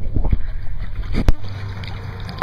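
Swimming-pool water sloshing and lapping against a camera held at the surface, a rough low rumble with small knocks. A sharp knock a little over a second in, after which a quieter steady low hum remains.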